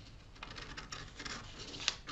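Scissors cutting through paper pattern sheet: faint crisp snips and paper rustle, with a sharper snip near the end.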